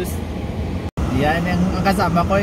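Steady low hum of a car engine idling, heard from inside the cabin, with a man talking over it in the second half. The sound drops out for an instant just under a second in.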